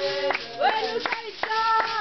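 Zulu sangoma ceremonial song: a group singing together with hand-clapping, about four claps a second, and no drum yet.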